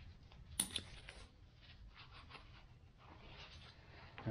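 Faint handling of a small Cordura nylon pouch and its cord: a sharp click about half a second in, then a few soft ticks and rustles of the fabric.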